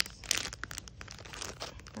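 Thin plastic pouch around a foot pad crinkling and crackling as fingers squeeze and work at it. The crackling is thickest in the first half-second, then thins out to scattered, quieter crackles.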